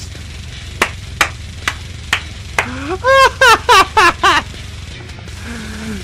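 A man laughing hard, a rising 'ha' followed by a quick run of pulses, for about two seconds near the middle. Under it runs a low steady rumble of music, and before the laugh come a few sharp hits about half a second apart.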